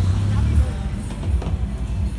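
Busy night-market street ambience: a steady low traffic rumble under scattered voices and faint music.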